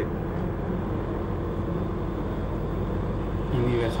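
Steady low background rumble with no distinct events; a man starts to speak near the end.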